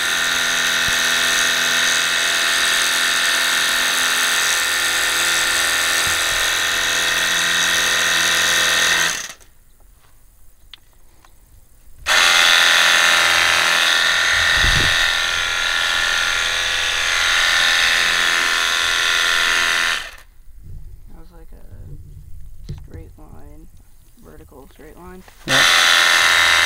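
Cordless battery-powered pressure washer's pump running with a steady whine and the hiss of the water jet through a turbo nozzle. It cuts out about nine seconds in for a few seconds as the trigger is let go, runs again, cuts out once more for about five seconds, and starts again near the end.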